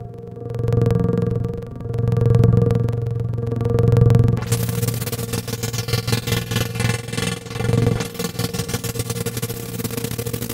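Yamaha Montage M6 synthesizer sounding a low, held, droning patch that swells three times. About halfway through it turns into a dense, rapid stuttering pulse while the player works the panel controls.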